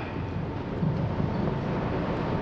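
Steady background hum and room noise of a large hall picked up through a microphone, with a faint steady whine.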